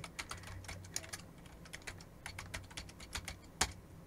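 Typing on a computer keyboard: a quick, uneven run of key clicks as an email address is entered, with one louder keystroke a little before the end.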